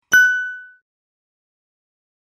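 A single bright bell-like notification ding sound effect, the chime for clicking the subscribe bell icon. It is struck once, just after the start, and rings out to nothing in under a second.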